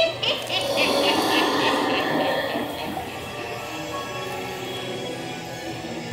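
Dark-ride soundtrack playing over the attraction's speakers: music, with a character's voice in the first few seconds.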